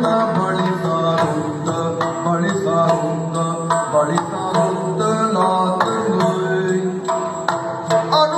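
Yakshagana background ensemble playing: a singer's gliding melodic line over a steady low drone, with frequent drum strokes.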